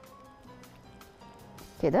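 Soft background music with faint, irregular clicks of a wire whisk stirring a yogurt-mayonnaise sauce in a glass bowl, and one short spoken word near the end.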